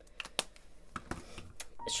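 Several light, separate clicks and taps of art supplies being handled on a desk, the sharpest a little under half a second in.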